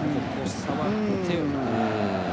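Steady roar of a football stadium crowd, with a long, falling vocal groan rising out of it from about half a second in, a reaction to a goal-bound shot that has just been stopped or gone wide.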